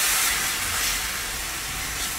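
Chopped onion sizzling in ghee and oil in a stainless steel pan: a steady frying hiss that eases a little after the first half second.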